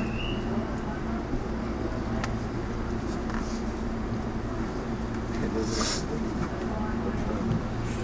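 Steady low hum of a halted electric train's onboard equipment, heard from inside the front car, with a brief hiss right at the start and another about six seconds in.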